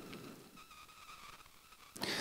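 Near silence: faint room tone with a faint steady high-pitched tone.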